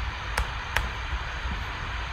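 Two light clicks about a third of a second apart from working the computer, deleting and placing neurons in the program, over a steady low hum.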